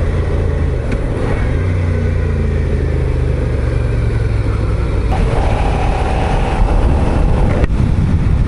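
Suzuki SV650S V-twin motorcycle engine running at a steady road speed, its low hum rising slightly about two seconds in. The sound changes abruptly about five seconds in and again near the end, where the footage is cut together.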